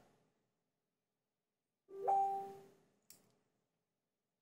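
A single short musical note, like a chime or piano key, about two seconds in: it swells quickly and dies away within a second. A faint click follows about a second later.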